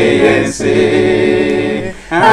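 Unaccompanied male voices singing an Efik hymn in close harmony, one singer's voice layered into four parts. They hold a chord, then break off briefly near the end before the next phrase.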